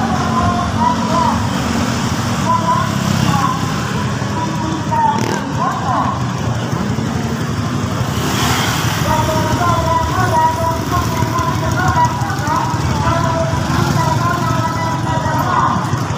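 Motorcycle traffic on a town street heard from a moving motorcycle: engines running steadily under a constant rumble, with voices mixed in.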